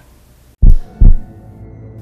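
Two deep, very loud bass thumps about half a second apart, like a heartbeat, followed by a low held music drone: a trailer sound-design hit.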